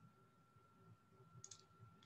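Near silence: room tone with a faint steady high whine and one faint click about one and a half seconds in.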